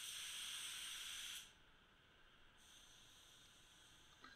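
SATAjet RP paint spray gun spraying base coat at 30 psi: a steady hiss of atomising air and paint that cuts off abruptly about a second and a half in as the trigger is released, leaving near silence.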